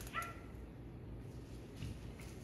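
Quiet room tone with one brief, high squeak near the start and a faint click near the end.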